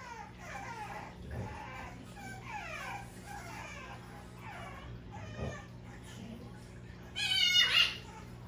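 Bulldog puppy whining in a run of short, high, falling cries, with a louder, longer cry near the end.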